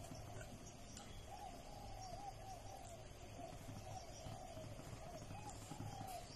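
A faint bird calling in the background, a soft wavering note repeated over and over for several seconds, over a low steady hum.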